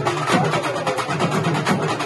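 Urumi melam drum ensemble playing a fast, dense beat: rapid drum strokes over a low, pulsing growl typical of the urumi drum rubbed with its curved stick.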